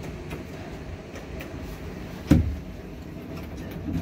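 Steady low hum inside a passenger elevator car, with a single loud thump a little past halfway through.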